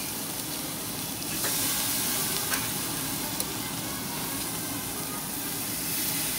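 Thin slices of fatty meat sizzling on a yakiniku table-grill mesh grate over flames, a steady hiss with a couple of faint ticks around the middle.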